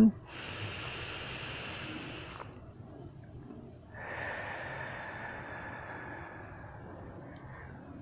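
A woman's long, deep breath in, then after a pause a long, slow exhale, close to the microphone. Crickets chirp steadily throughout.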